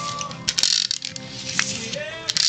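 Adhesive tape runner (a Tombow) being rolled over card stock in short strokes, its dispensing mechanism ratcheting and the tape rasping against the paper.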